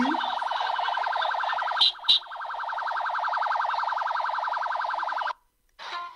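Electronic vehicle siren, a steady rapidly pulsing tone at one pitch, from a convoy heard through a phone's speaker. It is broken by two sharp clicks about two seconds in and cuts off suddenly just after five seconds.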